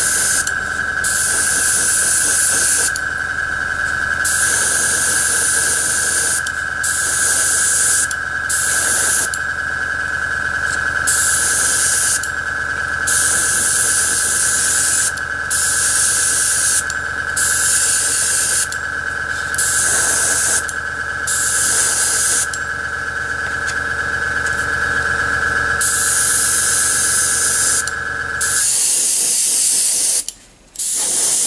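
Airbrush spraying paint in repeated bursts of hiss, switching on and off every second or two as the trigger is pressed and released. Under it runs a steady hum with a high whine, typical of the airbrush's air compressor, which stops near the end.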